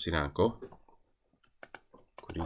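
A man's voice speaks briefly at the start, then a few short clicks from working a computer come about a second and a half in.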